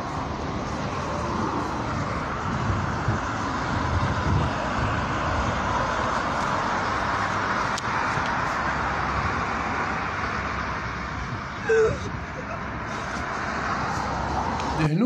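Outdoor ambience on a phone recording: a steady rush of road traffic with people's voices, and one short louder sound near the end.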